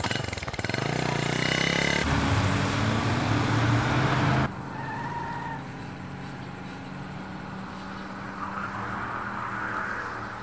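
A motorcycle engine running and revving as the bike pulls away. Just before halfway the sound drops suddenly to the quieter, steady hum of a car engine.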